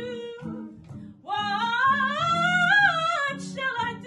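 Female jazz vocalist singing wordless phrases over jazz guitar accompaniment, with one long held note with vibrato from about a second in.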